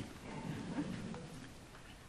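A pause in a speech in an auditorium: faint room sound with soft, indistinct stirring, a little louder in the first second and a half and then quieter.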